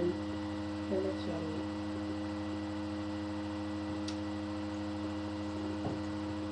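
A steady electrical hum made of several held tones, with a brief pitched vocal sound about a second in.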